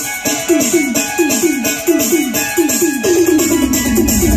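Live Adivasi DJ band music: a break in which electronic drum pads play a run of quick hits that each drop in pitch, about three a second, ending in one longer falling note, over steady cymbal ticks and without the bass drum.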